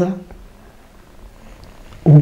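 A man's voice trailing off at the end of a phrase, then a pause of faint, steady low background hum of about a second and a half.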